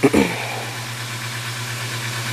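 A steady low hum with a hiss over it, like a motor or fan running. A brief sound right at the start drops quickly in pitch.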